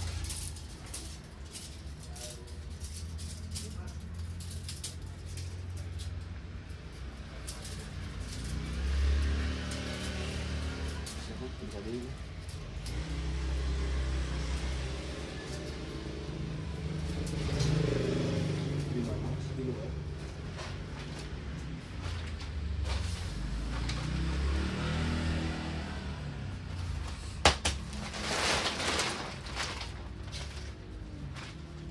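Indistinct voices over a steady low rumble. Near the end there is a sharp click, then plastic sheeting rustles as the clear wrapping is pulled off a bale of used clothing.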